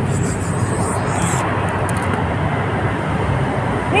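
Steady low rumble of road traffic, with a few faint clicks about a second in.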